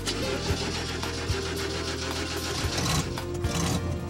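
An old pickup truck's engine starts and runs with a rough, noisy sound, under background music.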